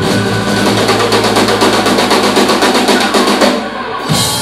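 Live rock trio of electric guitar, bass and drum kit winding up a song: a rapid drum roll over held guitar and bass notes, the whole band cutting off together near the end.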